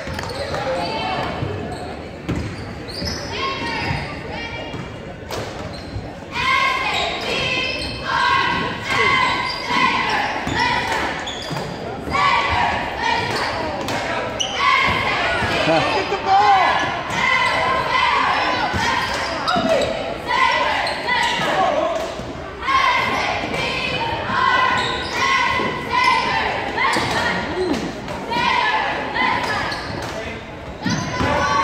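A basketball dribbled on a hardwood gym floor during a game, with indistinct voices of players and spectators, all echoing around the large gym.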